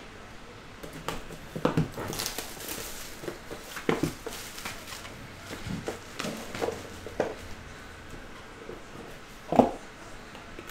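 Cellophane shrink wrap being slit and peeled off a trading-card box, crinkling and crackling in short bursts, with light clicks and taps as the box is handled. Near the end there is a single louder knock of the box against the table or its lid.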